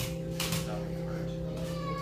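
A keyboard instrument holds a steady chord, with a brief clatter about a quarter of the way in. Near the end comes a short, high, falling, voice-like cry.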